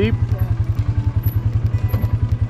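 ATV engine running at low revs with a steady, rapid pulsing beat as the quad creeps over a steep, rocky trail.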